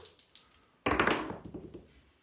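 A pair of dice thrown across a felt craps table: a sudden sharp hit just before a second in, then a quick run of clattering taps dying away as the dice tumble to rest.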